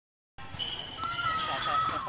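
Tennis ball bouncing on a hard court and being hit with a racket during a rally, over voices and a steady high tone.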